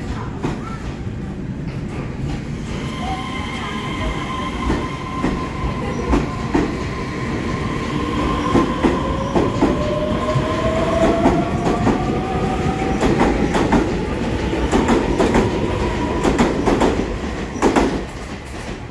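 TRA EMU3000 twelve-car electric multiple unit pulling out and accelerating past: a motor whine that rises in pitch over steady higher tones, with wheels clicking over the rail joints, the clicks coming faster and louder toward the end.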